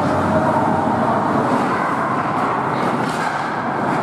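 Steady din of an ice hockey game in an indoor rink: skates scraping the ice and the hum of the arena, with a few faint stick or puck clacks between two and three seconds in.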